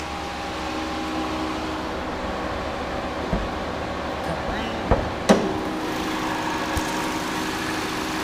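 A 2009 Chevy Cobalt's four-cylinder engine idling with a steady hum while its hood is released and lifted. A few sharp clicks and clunks come around the middle, the loudest about five seconds in.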